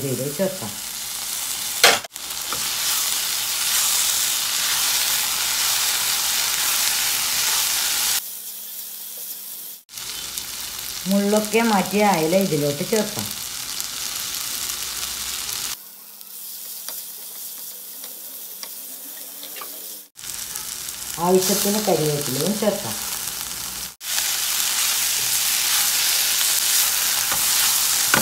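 Sliced-onion masala sizzling in a non-stick frying pan over a gas flame as it is stirred, heard in several short stretches with abrupt cuts between them. In two stretches the sizzle is much quieter, under a low hum.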